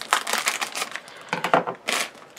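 A foil blind-bag packet being torn open and crumpled by hand: irregular crinkling and crackling, loudest near the end.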